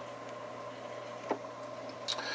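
Faint, steady background hum and hiss of a fish room's running equipment, with one soft click a little past halfway.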